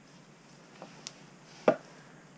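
Screwdriver and hand handling against the outboard lower unit and its wooden stand: a faint click, a sharp click just after a second in, then one loud knock near the end.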